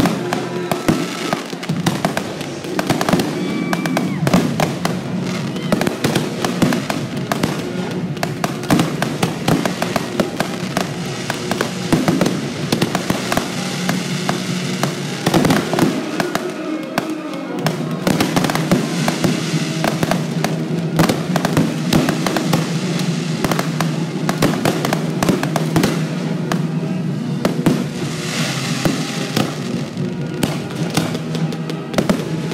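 A fireworks display: bursts and crackling going off continuously in quick succession, with music playing underneath.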